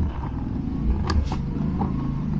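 Plastic clicks and knocks of a charger plug being pushed into and latched in an electric scooter's charging port, a few sharp clicks about halfway through. A steady low hum runs underneath.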